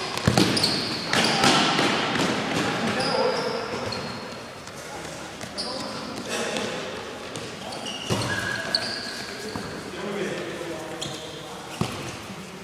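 A futsal ball being kicked and bouncing on a hard indoor court, a few sharp thuds echoing in a large sports hall, under players' shouts.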